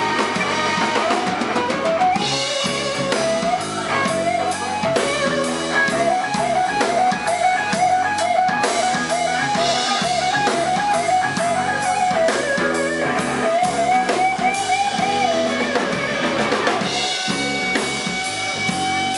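Live blues-rock band playing: an electric guitar lead with many bent notes over bass and a drum kit.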